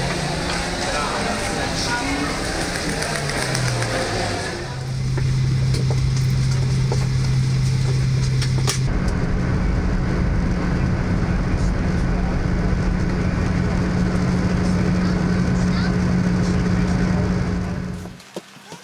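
Busy airport-terminal chatter for the first few seconds, then loud, steady airliner cabin noise: jet engine drone with a constant low hum, which shifts slightly higher at a cut about nine seconds in.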